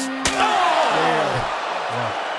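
A single sharp slam about a quarter second in, a body or object hitting hard in wrestling footage, with men's voices around it.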